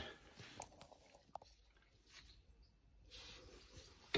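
Near silence: room tone with a few faint, scattered small clicks.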